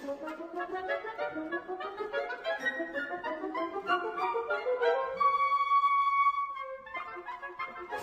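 Classical instrumental music: a run of notes climbing steadily for about five seconds, then one long high note held, before a new phrase begins near the end.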